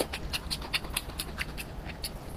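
Close-miked wet mouth sounds of chewing fatty braised pork belly with the lips closed: a quick run of sticky, smacking clicks, about five a second.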